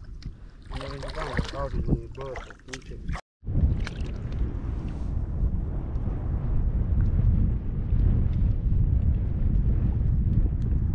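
Steady low wind rumble on the microphone, growing louder over the last seconds, over faint shallow water, with brief talk and a laugh before a cut about three seconds in.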